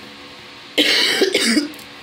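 A woman coughs once about a second in, a short burst in two quick parts.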